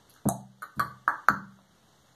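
Five quick knocks on hollow wood, each with a short low ring, coming in an uneven, roughly paired rhythm over about a second.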